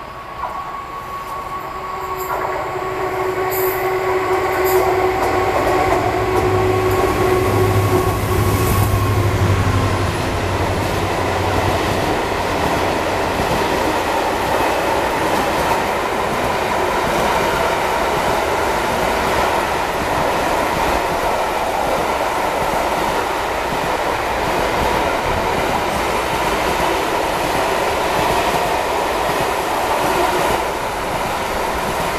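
Container freight train approaching and passing close by: the locomotive grows louder over the first few seconds with a steady whine, then a long run of container wagons rolls past with a steady rumble of wheels on rail.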